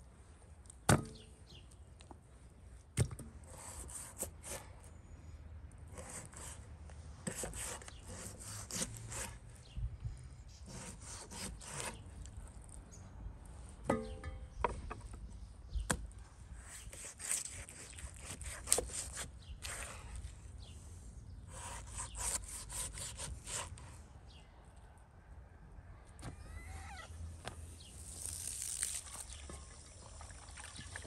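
Knife cutting beef oxtail into pieces on a wooden cutting board: short scraping strokes through meat and gristle, with sharp knocks of the blade striking the board. Near the end, water starts running from a hose into an enamel basin.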